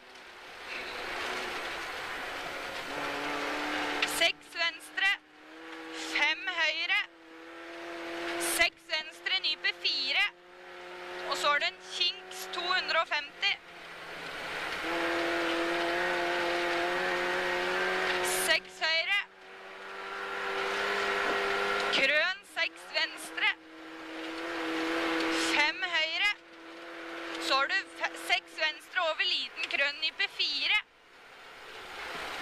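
Rally car engine heard from inside the cabin, pulling hard with its pitch slowly climbing through each gear. About every two to four seconds the note breaks off at a lift or gear change into a short fluttering crackle, then picks up again.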